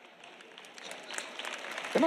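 Applause from a large audience, starting faint and growing steadily louder over about two seconds.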